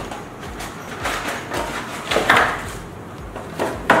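Cardboard burger box being opened by hand: the flaps scrape and rustle and the shrink-wrapped patty pack slides out, in a few short bursts, the loudest near the end.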